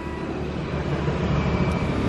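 Street traffic: a motorbike engine running as it passes on the road, the rumble slowly growing louder.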